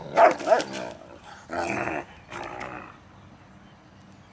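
Irish wolfhounds at play: two short sharp barks in the first half second, then two longer growling calls at about one and a half and two and a half seconds in.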